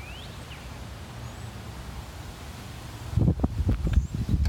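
Quiet outdoor ambience with a low steady rumble; about three seconds in, wind starts buffeting the microphone in loud, irregular low gusts.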